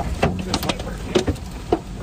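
Hail striking a vehicle's roof and glass, heard from inside the cabin: sharp, irregular knocks over a steady hiss of heavy rain and hail, with a low rumble beneath.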